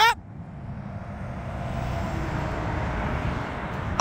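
Road traffic: a vehicle passing by, its tyre and engine noise swelling and then easing off.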